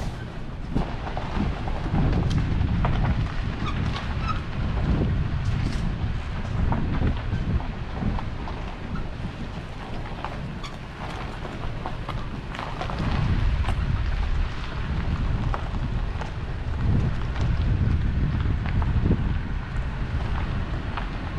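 Wind buffeting the microphone in uneven low gusts that swell and fade, with scattered light clicks.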